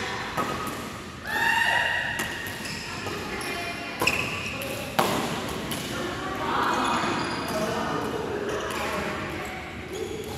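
Badminton rackets striking a shuttlecock during a doubles rally in a large sports hall, with two sharp hits about four and five seconds in. Players' voices call out between the shots.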